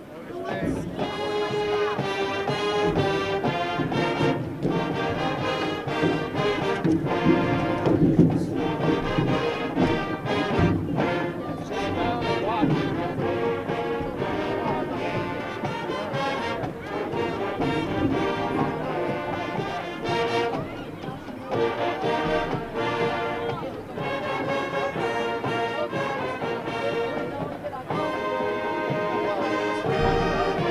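High school marching band playing an up-tempo brass tune, starting about half a second in and picked up by a crowd mic at the stadium.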